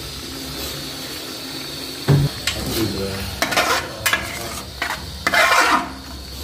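A ladle stirring chicken and sauce in a large aluminium cooking pot over a steady hiss from the hot, steaming pot. A knock about two seconds in is followed by repeated scraping strokes against the pot, the longest and loudest near the end.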